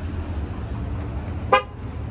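A single short car-horn toot about one and a half seconds in, over a steady low rumble.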